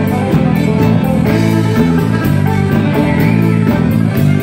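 Live band playing an instrumental break: a fiddle bowing a melody over strummed acoustic guitar, with a steady beat.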